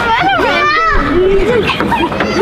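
Young children's voices calling out and shouting at play, high-pitched and sliding up and down, with no clear words.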